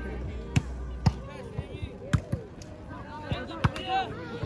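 A volleyball being struck by hands and forearms during a rally: several sharp, separate hits of the ball, with players' voices calling between them.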